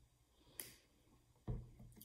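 Mostly quiet, with a faint short tick about half a second in, then a soft thump about a second and a half in as a glass bottle of cooking oil is set down on the tabletop.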